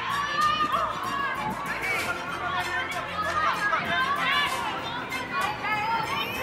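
Several voices calling and chattering over each other, with music underneath.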